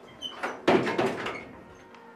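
A door banging: a short clatter of knocks just after half a second in, loudest twice within about a third of a second.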